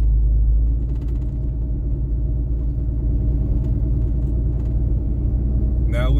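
Cab noise of a lifted 6.7-litre turbodiesel 3500 pickup on 37-inch tyres driving on a snow-covered road: a steady low engine and tyre rumble that eases slightly about a second in, with a few faint clicks.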